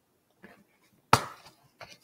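Small hard objects handled on a worktable: a faint click, then a sharp knock just after a second in, then two light clicks near the end.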